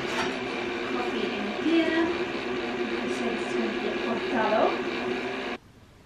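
Smeg electric milk frother running as it whisks homemade oat milk: a steady motor whir that cuts off suddenly near the end as its cycle finishes.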